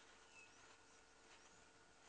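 Near silence: quiet bush ambience with a few faint, high bird chirps, two of them short rising notes.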